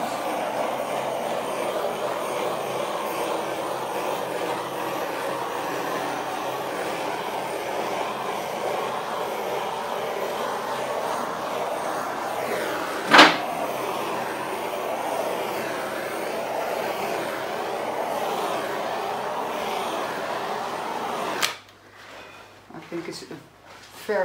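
Handheld torch burning with a steady rushing noise as it is played over a wet acrylic pour painting, with one sharp click about halfway through; the flame cuts off abruptly a few seconds before the end.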